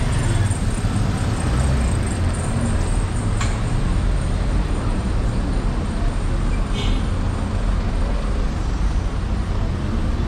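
Street traffic passing close by: cars and a motorcycle with engines running, a steady low rumble throughout. A sharp click comes about three and a half seconds in and a brief high-pitched sound near seven seconds.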